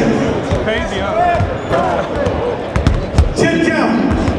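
Basketball bouncing on a gym floor, a few uneven thuds, under the chatter and shouts of people in the crowd.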